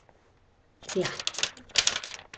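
Near silence for almost a second, then a quick run of light clicks and rustles, loudest near the end, over a short spoken word.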